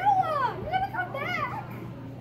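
A child's high voice with no words: a long squeal that falls in pitch, then two shorter wavering calls.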